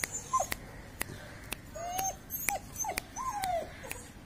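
Beagle puppy whimpering: several short cries that fall in pitch, then a longer drawn-out whine about three seconds in. Sharp clicks sound throughout, the loudest of them near the start.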